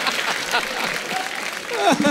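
Studio audience applauding, with voices over the clapping and a short falling tone near the end.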